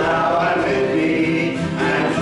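Congregation singing a hymn together, a mixed group of voices holding long notes, accompanied by acoustic guitar.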